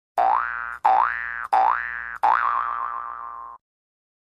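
A cartoon 'boing' sound effect played four times in quick succession, each a short twang that glides up in pitch. The fourth wobbles and trails off longer before stopping.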